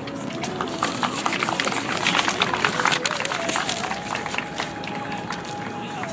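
Audience applauding: dense, irregular clapping that swells and then thins out, with voices underneath. A thin steady tone comes in a little past halfway.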